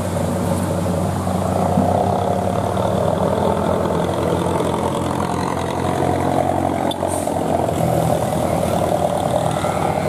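Heavy trailer truck's diesel engine running steadily at low revs under a heavy load while climbing a steep, winding grade.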